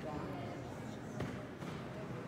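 Low, indistinct murmur of voices in a reverberant room, with a single short knock about a second in.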